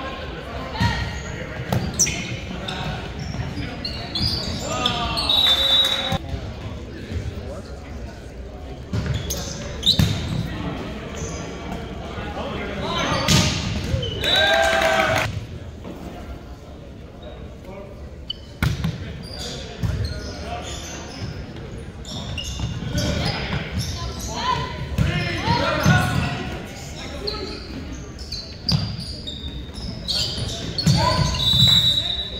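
Volleyball game sounds echoing in a large gymnasium: players' shouts and calls, with the ball being struck and bouncing on the hardwood floor.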